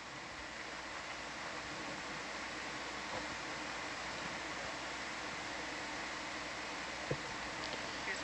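Steady hiss with a faint hum underneath, and one brief low knock about seven seconds in.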